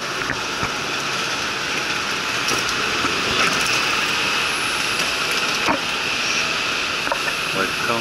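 Steady mechanical drone of airport machinery, an even rushing noise with a constant high-pitched hum over it, and a few faint knocks.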